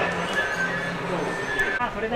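People's voices over background music, cut off abruptly near the end.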